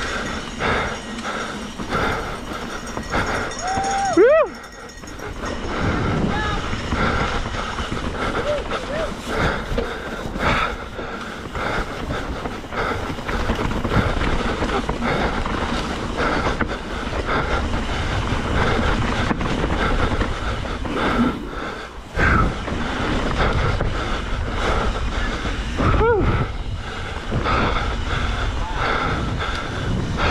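Mountain bike running fast down a rough dirt trail, heard from the rider's camera: a continuous rattling and clattering of the bike over the ground, with tyre noise throughout.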